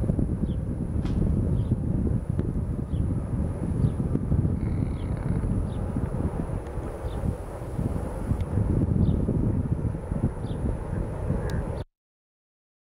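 Wind buffeting the microphone: a heavy, gusting low rumble that cuts off suddenly just before the end.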